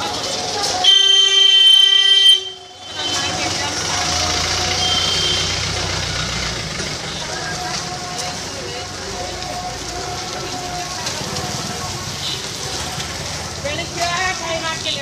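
A vehicle horn sounds once, a loud steady blare of about a second and a half, followed by street noise with voices and traffic.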